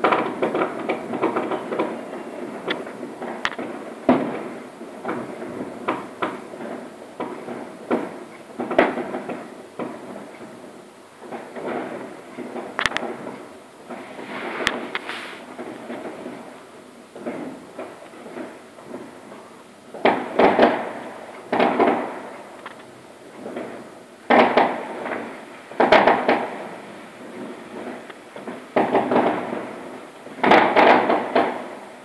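Fireworks going off outside, heard from indoors: a continuous patter of muffled bangs and crackles, with louder rattling volleys in the last third.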